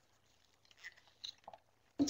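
Near silence with a few faint, short noises about a second in.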